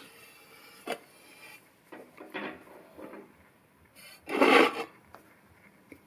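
A hand rubbing and sliding over a cast aluminium motorcycle primary chain cover lying on a steel bench, with soft scrapes and a small click. The loudest sound is one brief rasping rub a little over four seconds in.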